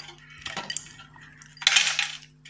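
Metal clatter as a floodlight's ballast is worked loose and lifted out of the fitting's metal housing. A few light clicks come first, then a louder rattling scrape near the end.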